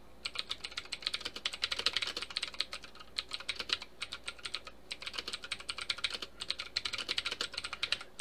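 Typing on a computer keyboard: a fast, continuous run of keystrokes, easing off briefly around the middle.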